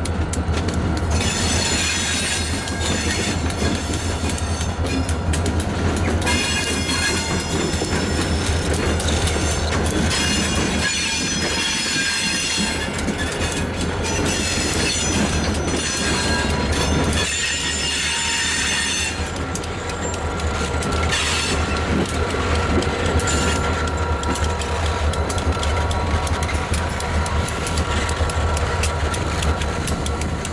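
Diesel freight locomotives passing with a steady engine drone, and wheels squealing on the rails on and off from about a second in until about two-thirds of the way through; after that mainly engine and rolling wheels.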